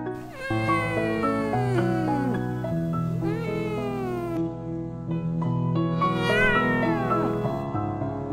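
A domestic cat gives three drawn-out meows, each sliding down in pitch, over background piano music.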